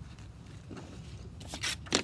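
Two short rasping rustles near the end, the second louder, as a stiff sheet of 100-grit sandpaper is picked up and handled, over a faint low background.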